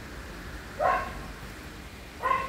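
A dog barks once, about a second in.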